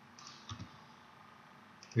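A few soft clicks from a computer mouse and keyboard, the loudest about half a second in, over faint room hiss.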